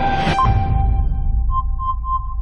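Electronic countdown sound effect: a low drone under steady tones, with a short beep marking each count, a rising whoosh in the first half second, then a quick run of beeps near the end.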